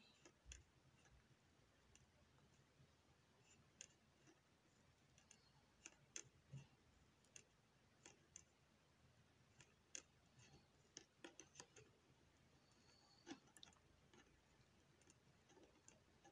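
Near silence with faint, irregular clicks of knitting needles as stitches are worked.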